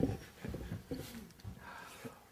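Soft laughter and chuckling from a few people, in short breathy bursts.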